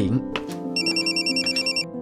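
Mobile phone ringtone: a rapid, high electronic warbling trill lasting about a second, starting just under a second in, preceded by a brief click. Soft background music plays underneath.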